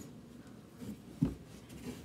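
Quiet movement noises from a person getting up and moving off, with a few faint knocks and one low thump a little over a second in.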